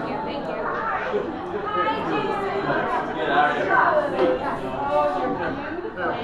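Several people talking at once: overlapping conversation and chatter.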